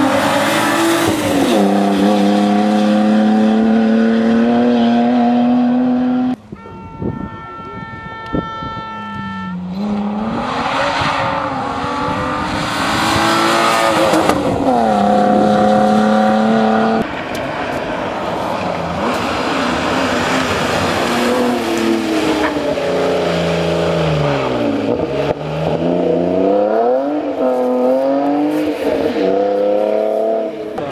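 BMW E36 3 Series rally car's engine run hard: held at high revs for stretches, with the pitch dropping and climbing again through gear changes and lifts. Several passes are cut together, with an abrupt change in sound about six seconds in and again past halfway.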